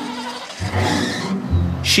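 A 1960s Ford Mustang convertible's engine running as the car drives, with a brief rushing noise about a second in.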